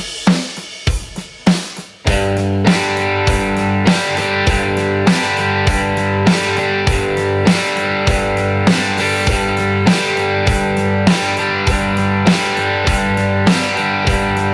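A drum-kit groove of kick, snare and hi-hat plays alone, and about two seconds in a Telecaster electric guitar comes in strumming chords in time with the beat.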